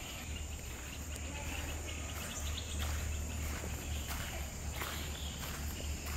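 Insects droning steadily in the trees, with footsteps on a dirt path about twice a second and a low steady rumble underneath.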